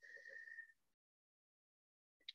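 Near silence, apart from a faint sniff at a wine glass carrying a thin steady whistle that fades out under a second in.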